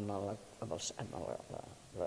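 Speech only: a woman talking, with one drawn-out word at the start followed by a few quieter, halting syllables.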